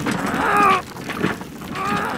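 A high-pitched, voice-like call repeated about three times in two seconds, each call short and sliding in pitch.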